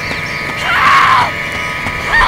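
A woman's single high, wavering cry of panic, starting about half a second in and lasting about half a second, over a steady droning music bed.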